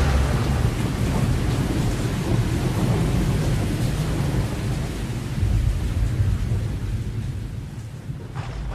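Rain with rolling thunder, a recorded storm with steady hiss and low rumble, swelling about five and a half seconds in and fading slowly toward the end.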